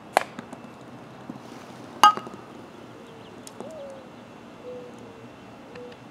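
Croquet mallet striking a ball just after the start, then about two seconds later a louder, sharper knock with a short ring as the ball hits a brick, followed by a few light ticks as it bounces and rolls on the concrete driveway.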